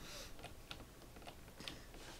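A few faint, scattered clicks of a computer keyboard.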